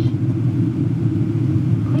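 Steady cabin rumble inside a Boeing 777-200 airliner on final approach: engine and airflow noise heard from a rear window seat, a low even drone with a fainter hiss above it.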